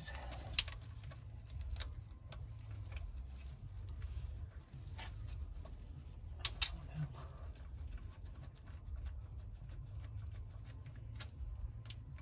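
Faint scattered clicks and taps of a ratcheting wrench and metal hardware as bolts on the air valve of a Mazda Miata engine are worked loose, with two sharper clicks, about half a second in and about six and a half seconds in, over a steady low rumble.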